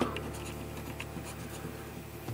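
A coin scratching the coating off a paper scratch-off lottery ticket, in short, faint scrapes.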